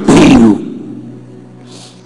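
A man's loud, shouted voice for the first half second, dying away in the hall's echo. Then a low steady note held on the keyboard under near quiet.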